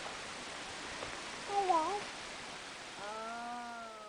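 Two short wordless vocal calls over a steady background hiss: a brief one that wavers and dips in pitch about a second and a half in, then a longer held one that falls slightly in pitch near the end.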